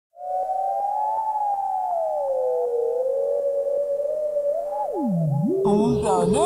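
Electronic music opens with a synthesizer tone that glides slowly up and down in pitch, with faint regular clicks beneath it. Near five seconds the tone swoops down low and back up, and just before the end a denser layer of warbling, bending electronic sounds comes in.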